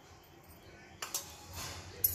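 Faint kitchen handling sounds: a short click about a second in, then a soft rustling scrape, as a spoon and containers are handled around a stainless steel mixing bowl.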